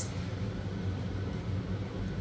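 Steady low hum of a running room appliance motor, with no distinct knocks or voices over it.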